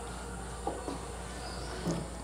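Insects chirring steadily in the background, a thin high-pitched tone, over a faint low hum.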